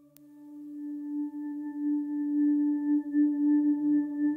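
Meditation music: a sustained singing-bowl tone with ringing overtones and a slow wavering beat. It swells in loudness over the first two seconds, then holds.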